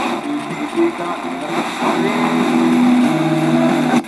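Sony SRF-59 Walkman pocket radio playing an FM broadcast through its small speaker: a stretch of music with long held notes and a voice over it.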